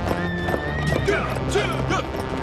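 Horses' hooves clip-clopping on the ground, with a horse whinnying: a high held note that breaks into a wavering, falling call about halfway through. Background music with long held notes plays under it.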